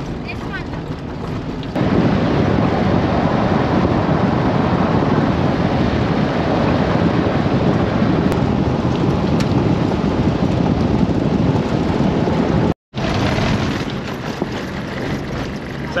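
Tyre roar on a gravel road and wind buffeting the microphone of a camera mounted on the side of a moving Nissan Patrol near the front wheel: a loud, steady rumbling noise that jumps louder about two seconds in, with a brief cutout near the end.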